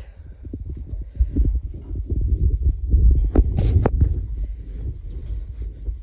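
Footsteps and handling noise on a hand-held phone while walking, heard as a dense, irregular low thumping rumble, with a brief higher-pitched squeak about three and a half seconds in.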